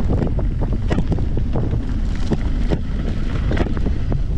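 Wind buffeting the camera microphone as an e-mountain bike rolls over a dirt trail, with irregular clicks and rattles from the tyres and bike over rough ground.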